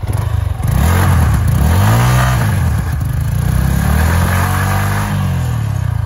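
Yamaha R15M's 155 cc single-cylinder engine revved hard for a burnout with traction control switched on. The revs rise and fall twice, then hold high for a couple of seconds before dropping near the end.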